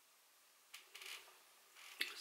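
Near silence, broken by two faint, brief rubbing sounds about a second in, from a plastic makeup compact being handled.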